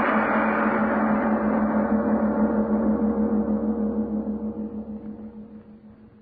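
A gong, struck just before, rings on with a steady low hum and fades slowly away, nearly gone near the end. It is a dramatic sting marking a scene change in an old-time radio drama, heard on a narrow-band old recording.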